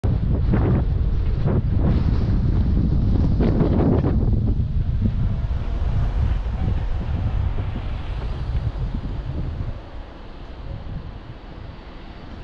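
Wind buffeting the microphone of a camera moving along a road, a loud low rumble with gusts in the first few seconds that eases off and drops about ten seconds in.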